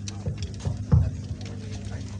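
Three or four short low thuds, the loudest about a second in, over a steady low hum.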